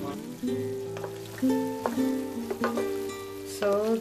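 Background music of a plucked string instrument, single notes a fraction of a second apart, over a faint sizzle of beef keema and potatoes cooking in the pan.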